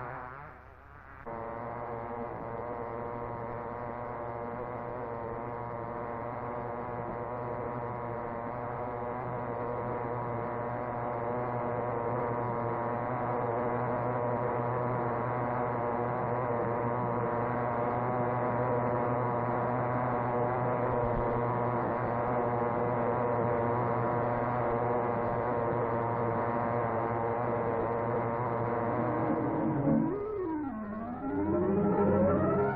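Small two-stroke model racing car engine running steadily at high revs: a constant-pitched buzzing drone that starts about a second in and grows a little louder over the first dozen seconds.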